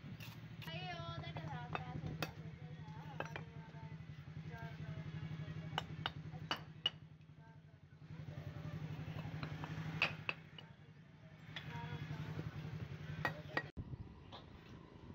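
Bricklaying: scattered sharp clinks and knocks as bricks are set and tapped down into cement mortar with a brick hammer, over a steady low hum.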